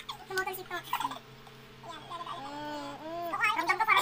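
A woman and a young man laughing hard, in broken bursts with high squealing rises and falls of pitch, loudest near the end.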